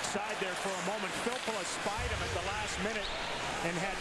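Ice hockey arena crowd noise with sharp knocks from play on the ice, under a man's broadcast commentary. A low thud comes about two seconds in.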